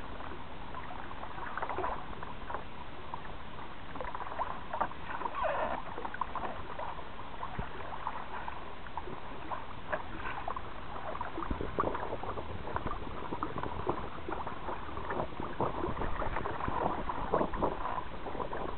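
Sea water splashing and slapping against the hull of a fishing kayak as a hooked shark tows it through the chop (a "sleigh ride"). There is a steady wash with many small, irregular splashes, busier in the second half.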